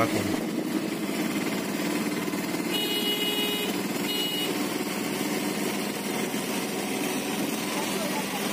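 Auto-rickshaw's small engine running steadily with road noise, heard from inside the moving vehicle. A horn sounds twice, about three seconds in and again just after four seconds.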